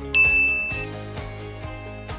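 A single bright ding sound effect with the on-screen title graphic: it strikes just after the start and rings as one high, steady tone for under a second, over soft background music.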